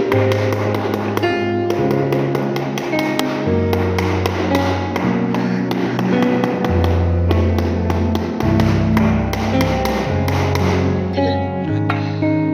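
Background music with held notes over a bass line, mixed with a rubber mallet tapping a ceramic floor tile down into its adhesive bed.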